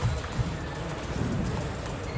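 Table tennis balls clicking off bats and the table during practice rallies: a few irregular light taps over steady hall noise.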